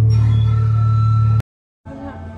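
Loud, steady low drone of an ambient soundscape, with a faint high tone over it, cutting off abruptly about one and a half seconds in. After a brief dead silence, a quieter hum starts again near the end.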